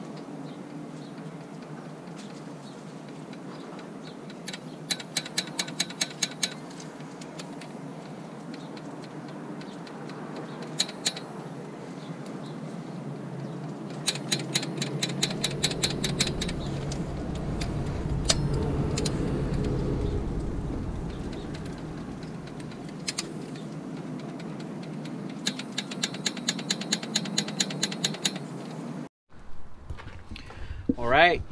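Ratchet of a long torque wrench clicking in three quick runs as bolts on the cylinder head are tightened to 8 ft-lbs, with a few single clicks between them. A low rumble swells and fades in the middle.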